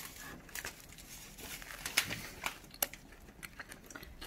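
Light rustling and scattered small clicks from handling a burger over its paper wrapper and a steel tray.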